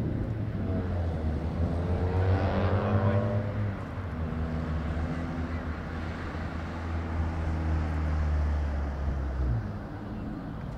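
A vehicle engine running with a steady low drone; its pitch climbs and falls back between about one and three and a half seconds in, and the drone stops about nine and a half seconds in.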